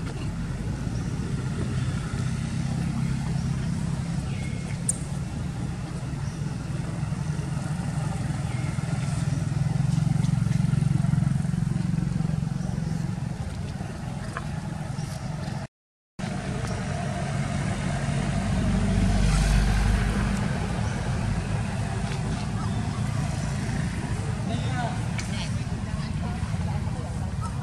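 Steady low rumble of motor-vehicle engine noise that swells twice as traffic passes, under faint background voices. The sound cuts out completely for about half a second partway through.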